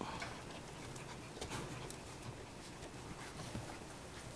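Faint, irregular light clicks and scuffles of toy poodle puppies moving about in a wire playpen.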